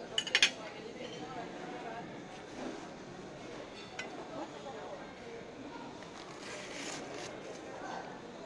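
A metal fork clinking against a ceramic plate: a quick run of sharp clinks just after the start and a single click about four seconds in, over a steady murmur of background voices. A brief rustle of the stiff paper food cone comes near the end.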